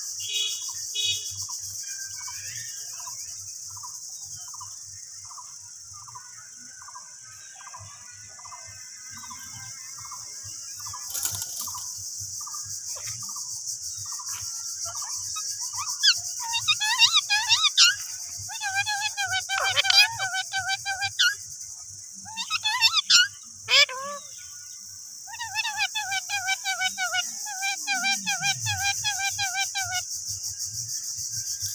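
Rose-ringed parakeets calling: a faint call repeated about every half second, then from about halfway through, loud chattering calls in quick trilled series, over a steady high insect buzz.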